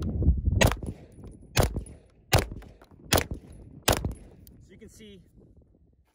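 Five single semi-automatic shots from a Grand Power Stribog SP9A3S 9mm carbine, fired at a slow, even pace a little under a second apart, each with a short ring-out. The gun is fed from a Gen 1 straight magazine, which is being tested for weak case ejection.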